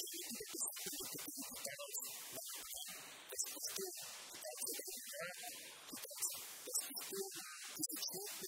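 Speech only: a man talking, the voice sounding garbled and blotchy, as from a low-quality compressed recording.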